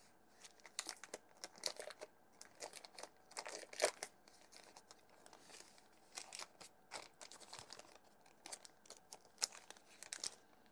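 Faint plastic bag crinkling and tearing as it is torn open and peeled off a computer fan, in irregular crackles, the loudest about four seconds in.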